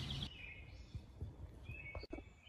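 Faint woodland ambience with a few soft low thumps and a short high bird chirp near the end.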